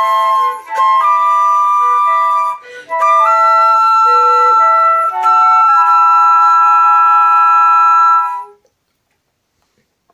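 Trio of concert flutes playing in three-part harmony with held notes and short breaths between phrases, closing on a long final chord that stops about eight and a half seconds in.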